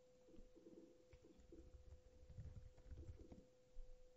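Near silence: faint room tone with a steady low hum, some faint low rumbles and a few soft clicks.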